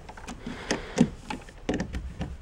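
A few short clicks and knocks of objects being handled, the loudest about a second in.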